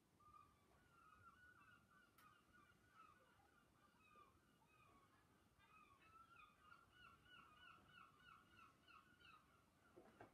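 Near silence with faint bird calls: scattered short chirps, then a quick regular run of them, about three or four a second, in the second half.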